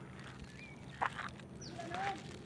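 A few faint, short animal calls over a quiet outdoor background, one of them a brief falling cry.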